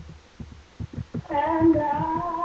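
A woman singing gospel: after a short pause filled with soft low thumps, she comes in about a second and a half in on a long held note.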